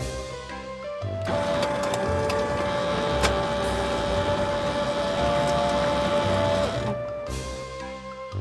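Office photocopier running a copy cycle: a steady mechanical whir with a few sharp clicks. It starts about a second in and stops near the end, over background music.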